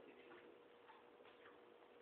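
Near silence, with a faint steady tone and a few faint traces of voice in a pause between speech.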